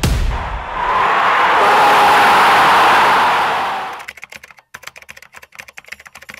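A loud rush of noise swells and dies away over about four seconds, then a quick run of keyboard typing clicks, the sound effect of caption text being typed out.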